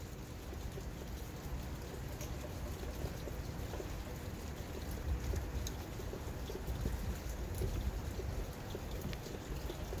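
Steady outdoor ambient noise on an open microphone: a fluctuating low rumble with an even hiss, broken by a few faint ticks and rustles of paper being handled.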